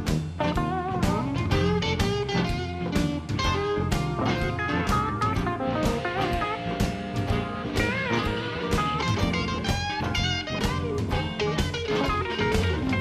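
Live blues band playing an instrumental break: an electric guitar lead with bent notes over drums keeping a steady beat, with bass and band backing.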